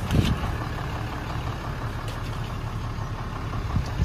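6.7-litre Cummins turbodiesel straight-six idling steadily, heard from inside the cab as a low rumble, with a couple of short knocks right at the start.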